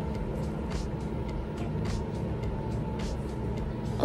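A steady low background rumble with a faint constant hum and a few soft ticks.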